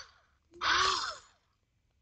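A woman's breathy exhalations, like soft sighs: two short puffs of breath, each under a second long.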